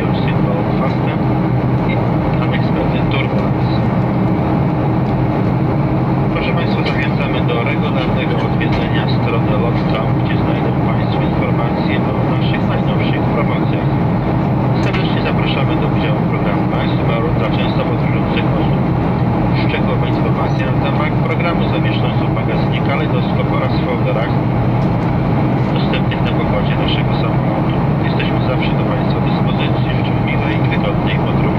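Steady, deep cabin noise of a Boeing 737-500 in its climb, heard from inside the cabin: the CFM56 turbofan engines and the airflow over the fuselage.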